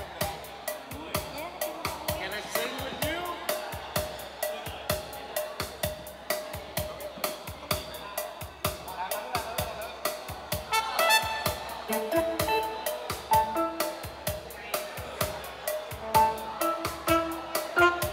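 Live band playing a song intro: a steady drum beat, with a saxophone melody coming in about eleven seconds in.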